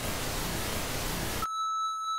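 Television static hiss for about a second and a half, then cutting straight to a steady high-pitched test-pattern beep tone, the sound of a TV going from no signal to colour bars.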